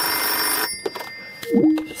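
A Skype video call disconnecting: a loud burst of hiss about a second long with thin steady high tones in it, then a short tone stepping down in pitch near the end.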